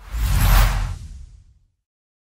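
A whoosh sound effect with a deep low rumble under it, swelling to a peak about half a second in and fading away by about a second and a half.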